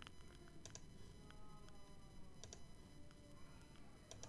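Faint computer mouse clicks in near-silent room tone, coming as two quick double clicks, one just before a second in and one about halfway through.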